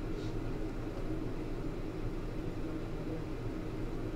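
Steady low room hum with no distinct sound events.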